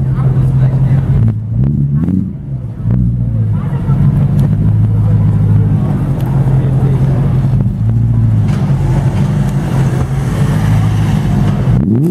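Straight-piped BMW M3's V8 idling loudly and steadily, with a couple of small throttle blips about two seconds in.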